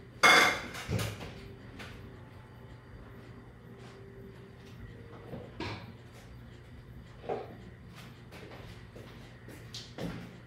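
Kitchen containers and utensils knocking on a countertop: a loud short clatter at the start, a second knock about a second in, then a few lighter knocks.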